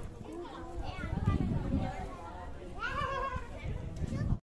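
Voices of a crowd of visitors, children among them, talking and calling out in the background, with one voice calling out more loudly near the end.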